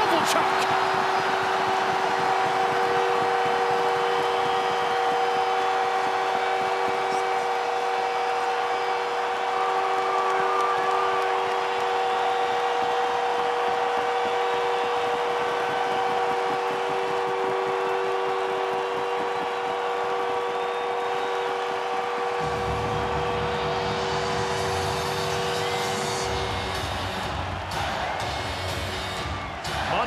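Arena goal horn sounding a long, steady multi-note blast over a cheering crowd after a home-team overtime winning goal. The horn cuts off near the end as music with a bass beat comes in under the crowd.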